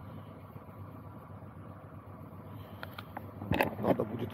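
Car engine idling quietly with a steady low hum, and a few knocks and rustles of the camera being handled near the end.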